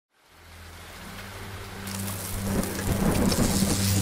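Thunderstorm sound effect of rain and thunder, fading in from silence and building in loudness over a steady low hum. A brighter hiss of rain joins about two seconds in.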